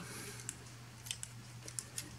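A small plastic Transformers action figure handled and folded during transformation: a few faint clicks and ticks of its plastic joints and parts, over a low steady hum.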